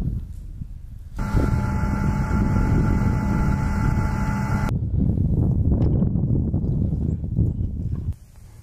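An M1150 Assault Breacher Vehicle's gas-turbine engine running: a steady whine of several held tones over a low rumble, starting about a second in and cutting off about two-thirds of the way through, followed by a plainer low rumble.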